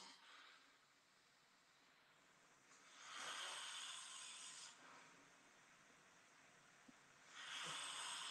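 Recording of a man's snoring played back faintly through a phone speaker: rasping snore breaths about every four seconds, each lasting a second or two. It is heavy snoring from severe obstructive sleep apnea, "not a sound of a healthy man asleep".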